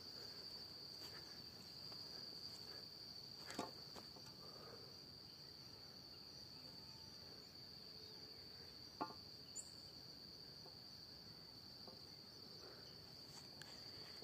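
Faint, steady high-pitched insect drone, unbroken throughout, with a couple of soft knocks about three and a half seconds in and again about nine seconds in.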